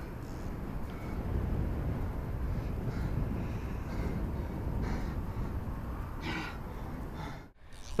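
Wind rumbling on the microphone, with faint voices now and then; the sound cuts out briefly near the end.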